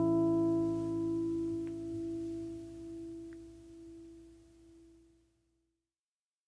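A final chord on a steel-string acoustic guitar rings out and dies away slowly, ending the song. Its higher notes fade first, and the lowest note lingers until it is gone about five seconds in.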